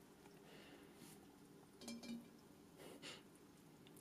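Near silence: faint room tone, broken by two soft, brief sounds about two seconds in and about three seconds in.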